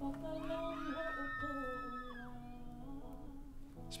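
A woman singing long held notes, accompanied by an acoustic guitar.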